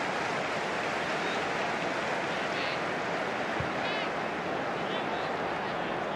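Steady, even crowd-like background murmur of a televised football match, with a few faint shouts from the pitch about midway.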